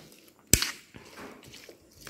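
A single sharp clack about half a second in: a spoon knocking against the plate while mixing a mango salad. Faint, soft sounds follow.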